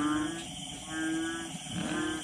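An animal calling over and over, about one call a second, each call a low held tone.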